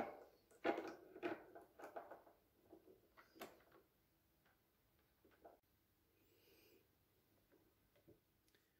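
Faint clicks and knocks of test probes and leads being handled against the terminals of a small resistance test box beside an analog insulation-continuity meter, a cluster of them in the first three and a half seconds, then near quiet.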